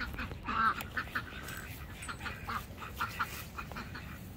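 A flock of domestic ducks quacking, a string of short quacks that keep coming throughout.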